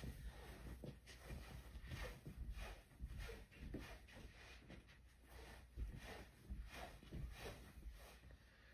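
Faint footsteps on carpet, a soft irregular run of light steps several a second, in an otherwise quiet room.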